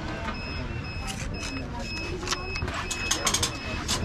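Electronic beeper sounding a steady high-pitched pattern of short beeps, about two a second, stopping shortly before the end, over background chatter.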